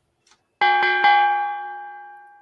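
Boxing-ring bell struck three times in quick succession, then ringing and slowly fading, sounding as the countdown reaches zero: the signal that time is up.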